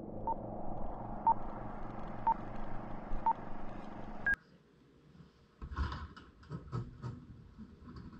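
Film-leader countdown: a short beep about once a second over a steady rumbling projector-like hiss, ending with a higher beep about four seconds in, then a moment of silence. Then irregular rattling and clattering as a sectional garage door starts to be raised.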